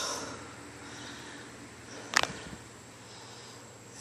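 Quiet outdoor background with a single sharp click about two seconds in, followed by a couple of faint ticks.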